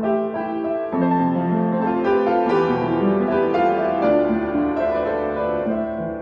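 Yamaha B1 upright acoustic piano played in a flowing passage of melody over chords, with notes ringing on and overlapping one another. The tone is full, with a lovely ring and long sustain.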